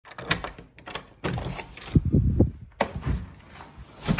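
A run of sharp clicks and knocks with dull thumps between them, as of a door being opened and someone stepping out and walking.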